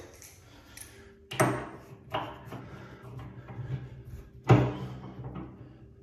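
Two sharp metallic clunks about three seconds apart, the second the louder, with lighter clicks between: an adjustable spanner being handled and fitted onto a chrome bath tap's cartridge.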